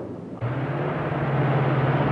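A motor car running steadily: a low, even engine hum over a rushing noise, starting about half a second in.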